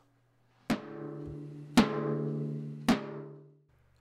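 A short drum sting: three deep, timpani-like drum hits about a second apart, each ringing on in a low sustained tone that fades out near the end.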